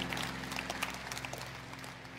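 Soft background music holding a sustained chord, slowly fading, over faint audience noise.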